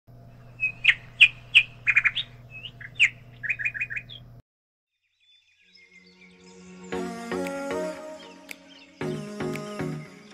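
Birds chirping in short, quick calls over a steady low hum, which all cuts off suddenly about four seconds in. After a brief silence, background music fades in, with plucked notes from about seven seconds.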